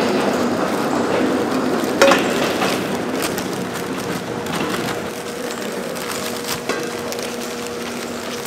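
Clear plastic bags rustling and crinkling as raw beef steaks are packed into them by hand, with a sharp click about two seconds in. A steady machine hum runs underneath.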